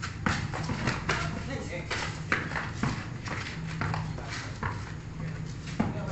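A basketball bouncing on a concrete court in hard, irregular knocks as it is dribbled, with players' voices.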